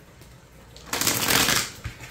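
A deck of tarot cards being shuffled: one dense riffling burst of under a second about halfway in, then a few faint clicks.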